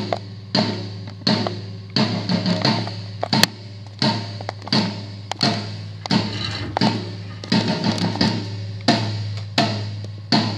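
A floor tom struck over and over in a steady sound-check pattern, about one and a half hits a second with an occasional quick double stroke, each hit ringing on at a low pitch between strokes.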